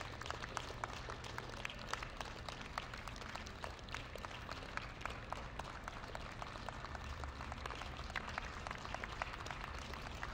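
Small crowd applauding: a steady run of many separate, irregular hand claps.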